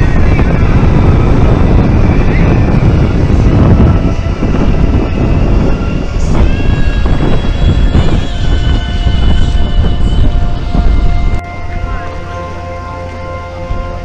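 Wind buffeting the camera microphone in loud, rough gusts. From about six seconds in, music with long held notes plays under it. The wind noise cuts off abruptly about eleven seconds in, leaving the music alone at a lower level.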